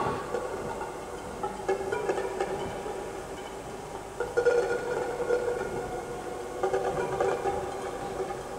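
Eurorack modular synthesizer playing electronic music: several steady, sustained tones layered together, with new notes entering about two seconds in and again about halfway through.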